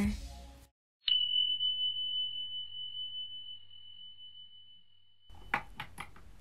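A single chime struck once, about a second in: one clear high tone that rings and slowly fades over about four seconds. Faint room noise with a few light clicks begins near the end.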